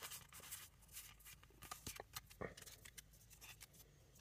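Near silence broken by faint scattered clicks and rustles of trading cards being handled and slid through the fingers, one slightly louder about two and a half seconds in, over a faint low steady hum.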